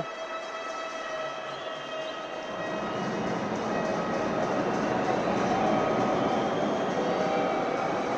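Arena crowd noise: a steady din with faint held tones running through it. It grows louder about two and a half seconds in.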